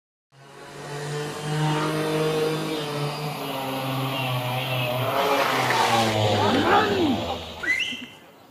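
A motor scooter's small engine running with a steady hum, revving up and back down about two-thirds of the way in.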